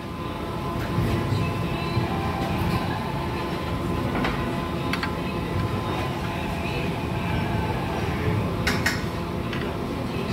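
Busy buffet restaurant ambience: a steady low rumble with a few short clinks of metal serving tongs against trays and plates.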